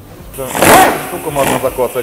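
A loud rush of compressed air from a pneumatic tool on a shop air hose, strongest in the first half, with men's voices under it.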